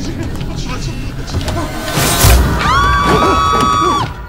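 A sudden loud thud about two seconds in, then two women screaming together on a high, steady pitch for over a second until the sound cuts off.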